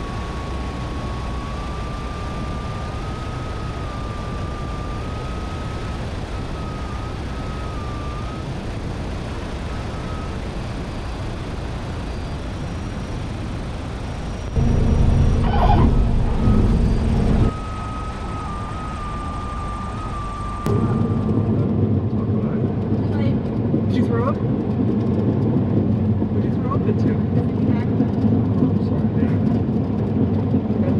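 Steady engine and airflow noise inside the cabin of a Cessna 172 Skyhawk during a night approach to land, with a faint wavering high tone in the first third. About halfway through it gets abruptly louder for about three seconds, and after about two-thirds a louder, duller noise takes over.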